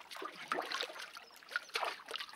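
Water trickling and sloshing in a few short, irregular bursts: a cartoon sound effect for an eggshell boat that is full of water.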